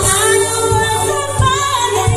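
Live band music through a PA: a woman singing a held, gliding melody over a steady beat, with a low thump about every 0.7 seconds from an electronic drum pad played with sticks.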